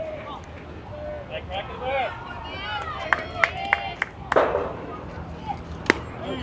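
Several young girls' voices shouting and chanting over one another, with a few sharp claps or knocks a little past the middle, a loud burst of noise about four seconds in, and one sharp crack just before the end.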